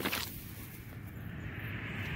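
A short breathy noise right at the start, then a faint, steady outdoor background with a low rumble and a thin hiss.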